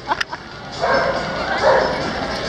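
A dog barking, starting about a second in.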